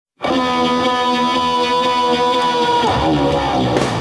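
Rock music opening on a single long held electric guitar note, which bends down in pitch near the end as deeper instruments come in.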